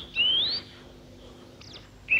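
A bird's whistled call: one clear note rising in pitch, about half a second long near the start, followed by faint background hiss.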